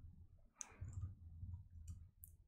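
A few faint keystrokes on a computer keyboard, heard as sparse light clicks over a low hum.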